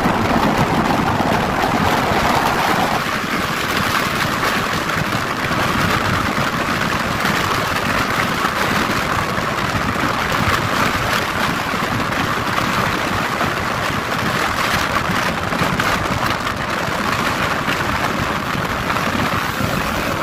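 Steady rush of wind and road noise from a car driving at highway speed, heard from inside the moving car.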